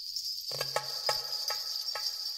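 Steady high-pitched insect chirring, with a few soft clicks and faint notes over it as music begins.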